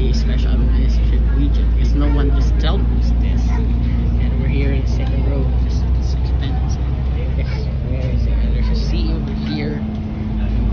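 Steady low engine and road rumble with a constant hum inside a moving vehicle, easing slightly near the end, with indistinct voices talking in the background.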